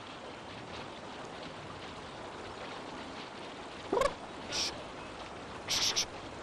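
A shallow river running steadily. About four seconds in there is one short call falling in pitch, and near the end two brief noisy bursts.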